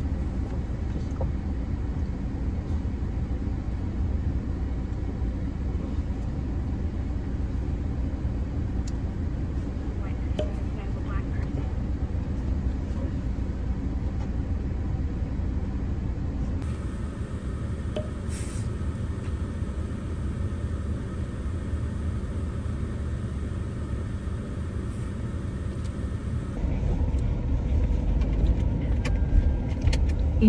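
Car cabin road noise: a steady low rumble of the car driving, heard from inside, growing louder in the last few seconds.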